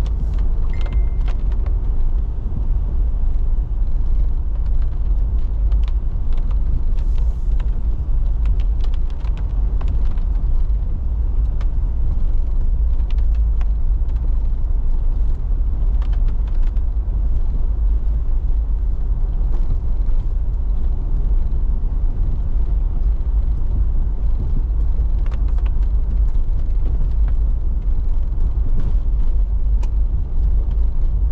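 Car driving slowly on a dirt road, heard from inside the cabin: a steady low rumble of engine and tyres, with scattered clicks and ticks throughout.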